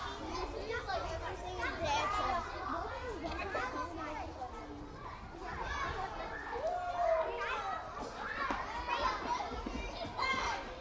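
A crowd of children playing in a schoolyard: many high children's voices calling and shouting over one another, with no single voice standing out, over a low steady rumble.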